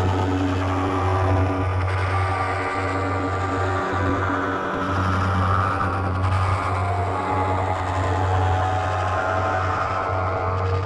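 Distorted, effects-processed logo music: a dense sustained drone with a loud steady low hum and many held tones above it.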